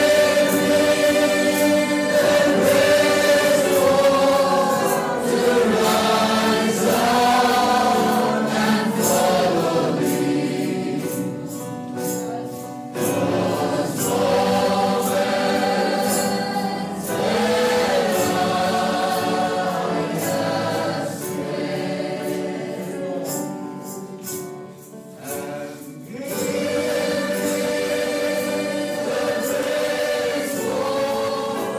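A choir singing a hymn in long, held phrases, with short pauses between phrases about 12 and 25 seconds in.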